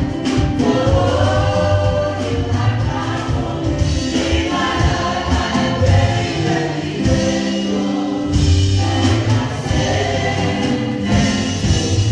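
Gospel worship song: several voices singing together with keyboard accompaniment and a steady bass line underneath.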